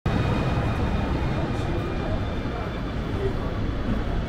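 Steady low rumble of a city bus running along the street, with passers-by talking.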